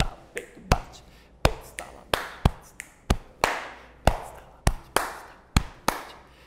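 Body percussion: a man slapping his chest with one hand, snapping his fingers and clapping his hands in a steady repeating rhythm of sharp separate strikes, about two to three a second, following a chest–snap–clap pattern.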